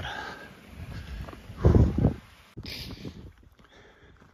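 A hiker's heavy breathing and footsteps while climbing a rocky dirt trail, with one loud exhale a little under two seconds in.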